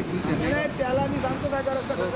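Men talking in an outdoor discussion, with steady road and heavy-vehicle noise underneath.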